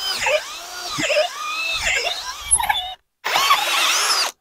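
Cordless drill with a long auger bit boring bolt holes through a wooden fence post, its motor whine dipping and rising in pitch as the bit loads up and frees. The drilling breaks off briefly about three seconds in, then resumes.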